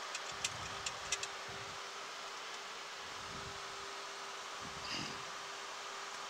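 Boeing 737 flight deck background noise during the descent: a steady rush of air with a constant hum under it. A few light clicks come in the first second or so.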